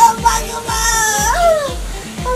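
Background music with a steady thumping beat about twice a second, under one drawn-out, high, crying wail from a woman that rises and then falls in pitch.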